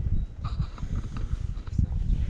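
Wind buffeting the camera's microphone: an uneven, gusting low rumble.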